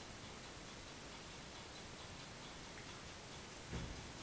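Faint, steady ticking, with a single dull low thump near the end.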